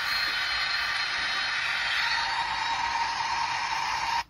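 Boeing 747 jet engine noise from a YouTube video played through a Coolpad Cool 1 smartphone's loudspeaker: a steady rushing hiss with almost no bass, with a steady whining tone joining about halfway through.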